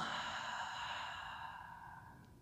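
A woman's long exhale through the open mouth, a deliberate sigh-like breath out that fades away over about two seconds.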